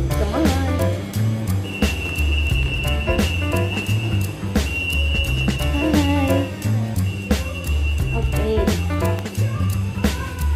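Background music with a steady, repeating bass beat and a melody over it.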